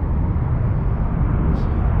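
Steady low rumble of outdoor background noise, with a brief faint rustle about one and a half seconds in.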